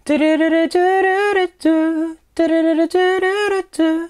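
A lone voice sings the draft chorus melody of a pop song: held notes stepping between two neighbouring pitches, in short phrases with brief breaks, and no accompaniment.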